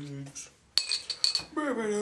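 A metal bottle cap clinking against a glass malt liquor bottle: a quick run of sharp clinks with a bright ringing tone, a little before halfway through.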